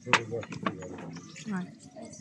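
A single sharp knock of tableware just after the start, as serving boards of food are handed across a table, followed by brief men's talk.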